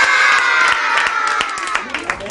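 A group of young children cheering and shouting together, with hand claps through it; the cheer eases off a little toward the end.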